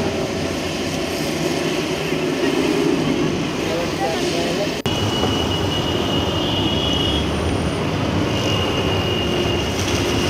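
Street traffic in heavy rain: motorbike and auto-rickshaw engines running under a steady hiss of rain and wet tyres, with a brief dip about halfway through.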